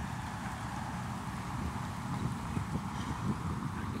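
Outdoor city street ambience: a steady background noise with irregular faint low thumps.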